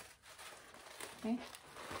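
Faint rustling and crinkling as folded new dress shirts are handled and brought together.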